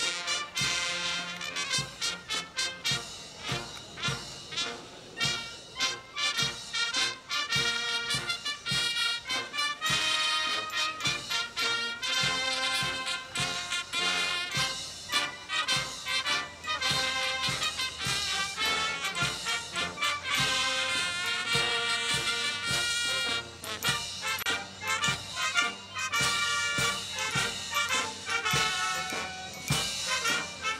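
Military brass band playing while marching: sousaphones, trumpets and other brass over a bass drum keeping a steady beat.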